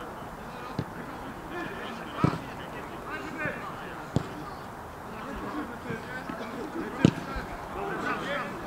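A football kicked four times on a grass pitch: sharp thuds about one, two, four and seven seconds in, the last the loudest. Under them, players call out at a distance.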